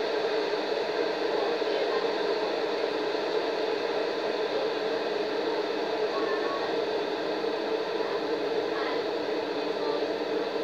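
A steady, even hum from a household appliance running, with no change in pitch or level.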